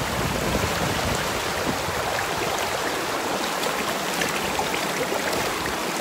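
Shallow rocky mountain stream flowing, a steady rush of water.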